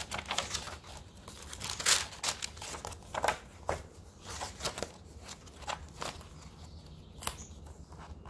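Paper pages of a handmade junk journal being turned and handled: a run of rustles and crinkles, the loudest about two seconds in and again near the end.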